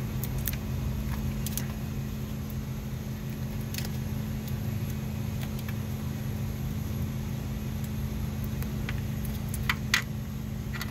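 A steady low hum, like a running engine or machine, with a few small metallic clicks and clinks from parts and tools being handled on the engine's valve cover. Two sharper clicks come near the end.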